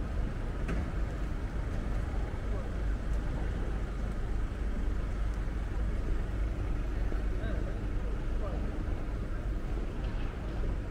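City square ambience: a steady low rumble of traffic with indistinct voices of passers-by.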